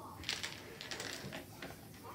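Dominoes being set down on a hard wooden tabletop and nudged against each other: a run of small clicks and taps, thickest in the first second and thinning out after.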